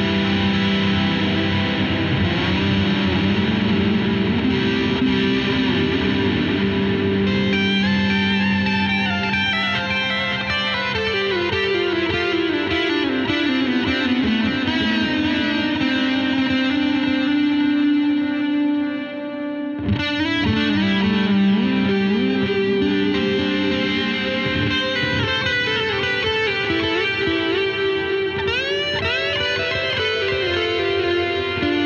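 Electric guitar through an EarthQuaker Plumes overdrive in its symmetrical LED clipping mode, with delay and reverb from an Avalanche Run and a clean Supro amp: sustained overdriven notes and chords, like an amp cranked up. A descending run of notes comes partway through, and there is a brief drop in level about two-thirds of the way in.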